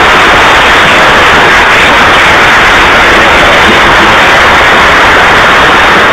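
Loud, steady audience applause.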